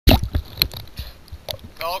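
Water splashing and sloshing over a camera held half-submerged at the surface, with a series of sharp knocks, the first and loudest right at the start. A man starts speaking near the end.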